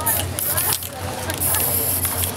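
An aerosol spray paint can hissing as paint is sprayed onto a board: a few short spurts, then a longer spray over the last half second.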